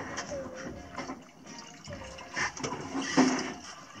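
Coconut water pouring from a coconut into a drinking glass, splashing and trickling unevenly, loudest a little after three seconds in.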